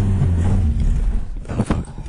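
Car engine running low and steady, heard from inside the cabin, its note fading away about a second in, followed by a few sharp clicks near the end.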